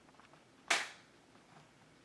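A single sudden, loud burst of noise about two-thirds of a second in, dying away within a third of a second.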